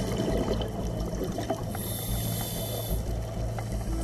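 Muffled underwater noise picked up through a camera's waterproof housing: a steady low rumble with fine crackle, and a high hiss from about two to three seconds in.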